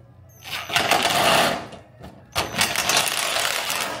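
Cordless impact driver driving screws into the sheet-metal side of a steel file cabinet: a rapid hammering rattle for about a second, a short pause, then a second longer run to the end.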